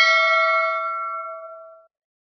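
Bell-chime sound effect ringing out after being struck: several clear tones fade away, the high ones first and the lowest last, over about two seconds.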